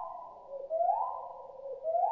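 Repeating electronic signal tone: a short upward sweep about every second, each held as a steady warbling tone until the next. A sci-fi comms or tracking-beacon sound effect.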